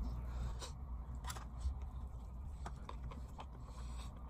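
A person chewing a bite of a seaweed-wrapped salmon hand roll: faint, scattered mouth clicks and soft crunches over a steady low hum.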